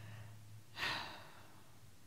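One breath, drawn in close to the microphone about a second in, over a faint steady low hum.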